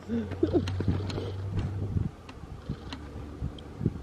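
A woman laughs briefly about half a second in, over a steady low hum that fades about two seconds in, with a few light handling clicks.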